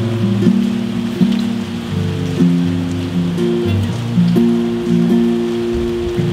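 Yamaha acoustic guitar with a capo being played without singing, its low notes changing every half second or so, over a steady hiss of rain.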